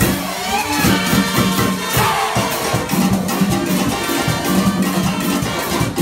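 Live comparsa band playing a fast, percussion-driven Latin tune: a busy beat of drums and shakers under sustained low notes.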